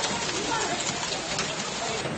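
Hail pouring down with heavy rain onto paving, a dense, steady hiss of falling stones and water.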